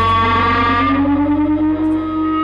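Music led by an electric guitar played through effects, holding one long note that slides slowly upward in pitch; the sound turns duller about a second in as its high end falls away.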